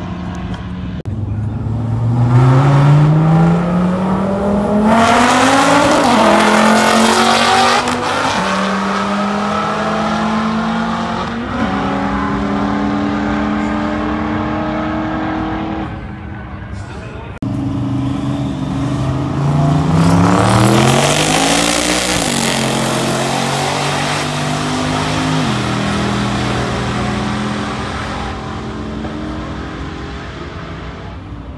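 Race cars at full throttle in roll races, engines climbing in pitch and dropping back at each upshift. There are two runs, the second starting just past halfway after a brief lull.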